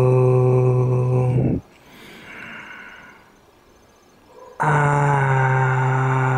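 A low male voice holding a long, steady sung note that breaks off about a second and a half in; after a brief quiet gap a second long held note begins near the five-second mark.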